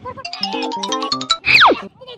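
Cartoon-style comedy music and sound effects: a quick run of stepped notes climbing in pitch, then a loud whistle sliding steeply down in pitch near the end.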